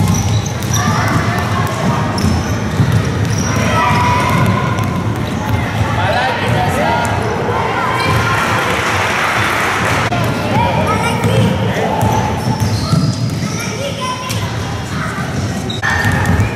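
Basketballs bouncing on a gym floor, with many children's voices shouting and chattering over them.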